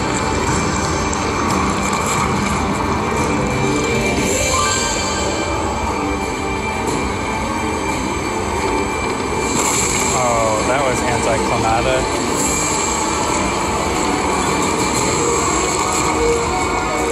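Walking Dead video slot machine playing its bonus-round music and reel-spin sound effects during free games, over a steady casino din with background voices. A short wavering electronic sound effect stands out about ten seconds in.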